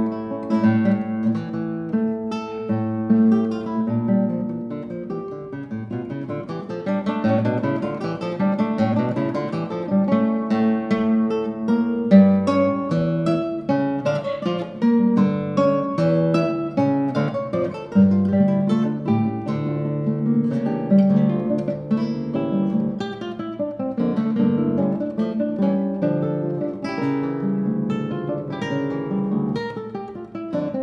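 Duet of two nylon-string classical guitars, fingerpicked, playing a continuous stream of plucked notes with melody and bass lines interweaving.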